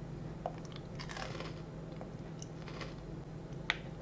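A person quietly chewing a bite of a soft chocolate-glazed wafer bar with caramel, peanuts and raisins, with faint crackly mouth sounds and one short sharp click near the end, over a steady low hum.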